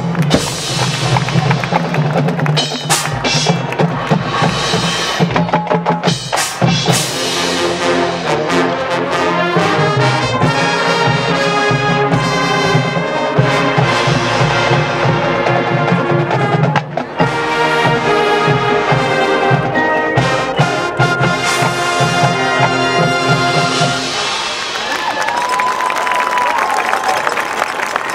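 High school marching band playing: brass over a driving drumline beat, with the drums dropping out about four seconds before the end.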